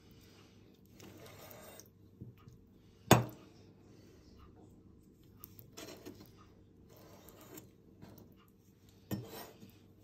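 Steel meat cleaver slicing raw chicken breast on a hard worktop: several soft slicing strokes through the meat. The blade knocks sharply on the worktop about three seconds in, and again near the end.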